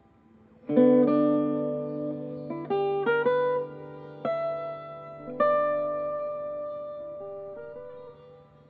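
Solo archtop guitar played slowly: a chord is struck under a second in, then a handful more chords and notes follow, each left to ring out and fade.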